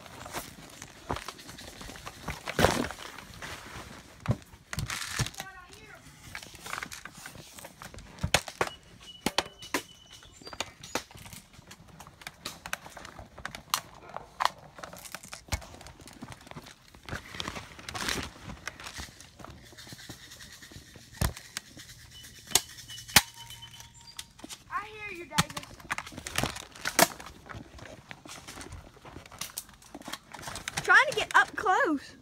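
Irregular sharp cracks and knocks from around an airsoft rifle, a few of them much louder than the rest (about 3, 18 and 23 seconds in), with a short call about 25 seconds in.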